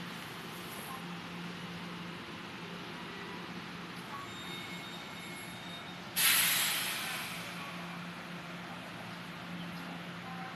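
Sudden loud burst of compressed-air hiss from a standing electric express train's air system, fading away over about a second, over the steady low hum of trains idling at the platform.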